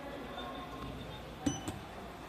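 Fujitec XIOR elevator arriving at the landing: a steady low hum, then a sharp metallic clunk with a brief ring about one and a half seconds in, followed by a lighter click, as the car stops and its doors begin to open.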